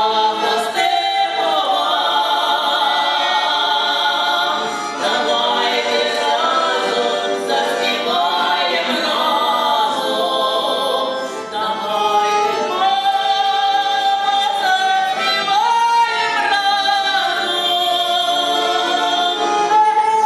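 Two women singing a song together into a microphone, their voices carrying long held notes, with two accordions accompanying.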